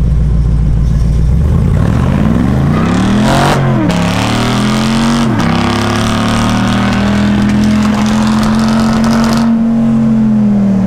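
Gen V LT V8 in a swapped Mazda RX2 making a drag-strip launch, heard from inside the cabin. It rumbles low at first, then revs up hard with two upshifts about three and a half and five seconds in, then holds a steady high pitch. On this pass the owners said it was not running great and sounded pretty rough, and they wondered whether the fuel filter or the fuel pump was to blame.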